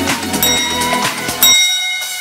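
Electronic dance music with a steady beat. About one and a half seconds in, the beat drops out and a bell chime rings over the music, the workout timer's signal that the countdown has ended.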